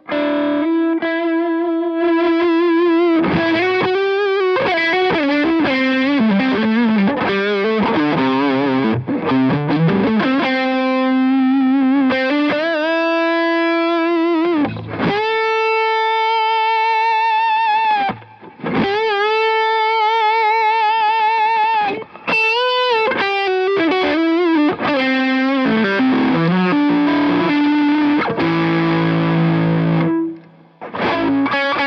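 Les Paul electric guitar played with distortion through an amp. It plays a single-note lead line with string bends and wide vibrato on long held notes, with brief breaks about two-thirds of the way in.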